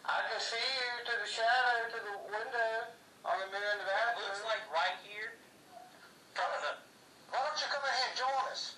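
A voice played back through the small speaker of a handheld digital voice recorder, thin and phone-like, in several phrases with short pauses, its words not clear.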